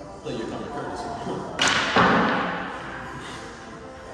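Pool balls struck on a pool table: a sharp clack about a second and a half in, then a louder knock that fades over the next second, with talk around it.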